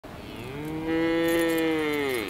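A cow mooing: one long call held at a steady pitch, growing louder over its first second.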